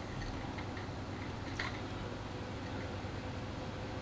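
Quiet room tone: a steady low background hiss and hum, with a few faint clicks in the first two seconds.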